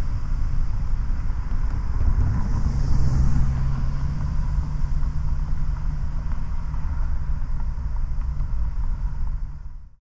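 Steady low rumble of city traffic ambience that begins abruptly, swells slightly a few seconds in and fades out at the very end.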